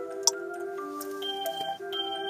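Music playing on a car radio inside the cabin, held notes stepping from one pitch to another, with a single sharp click about a quarter of a second in.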